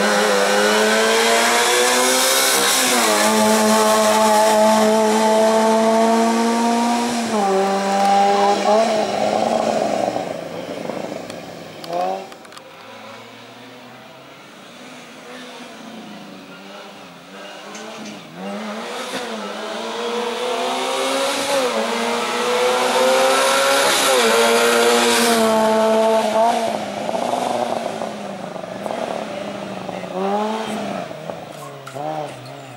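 Small hatchback slalom car's engine revving hard through a cone chicane, its pitch climbing and dropping sharply with each lift off the throttle and gear change, with tyres squealing at times. The engine falls away about ten seconds in and comes back loud and revving from about twenty seconds.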